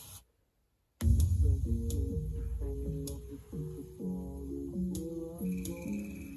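JBL Charge 3 portable Bluetooth speaker playing bass-heavy music at full volume. After about a second of silence the song comes in, with strong deep bass under a stepping melody.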